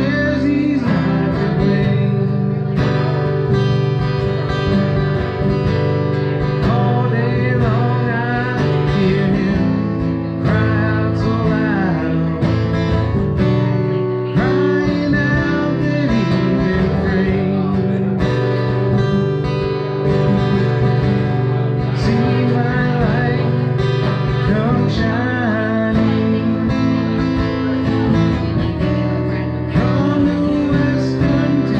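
Two acoustic guitars playing a song together while a man sings.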